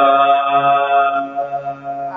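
A man's voice chanting into a microphone, holding one long, steady note of Quranic recitation that fades out about a second and a half in.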